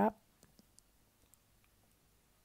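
The tail of a spoken word, then a few faint, scattered clicks from mustard seeds and dried red chillies frying in oil in a wok as a spatula stirs them.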